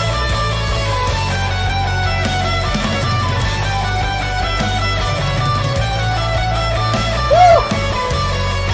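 Live rock music with guitars and orchestral strings over steady sustained chords. Near the end a brief, louder tone slides up and back down.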